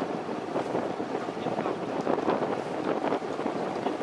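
Steady rushing noise of a boat under way on a river, with wind buffeting the microphone.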